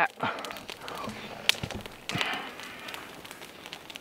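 Faint, brief murmured voice sounds with a couple of sharp clicks in between.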